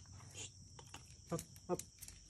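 A tan askal (Filipino street dog) giving two short whines in quick succession in the second half, eager for a treat held above it.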